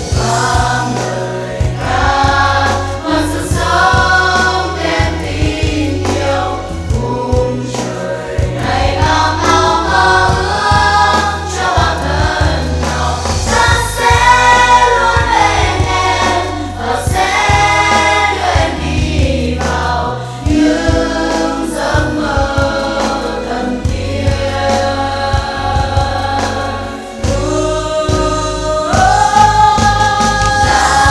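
Music: a song sung by a choir of young voices over a backing track with a steady bass line.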